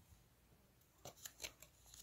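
Near silence, then a few faint short clicks and rustles about a second in, from hands folding a page of a picture book.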